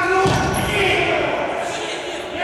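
Players shouting in an echoing sports hall, with the thud of a futsal ball during a shot on goal.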